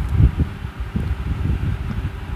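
Low, irregular rumbling noise on the microphone, the kind made by air or handling against it.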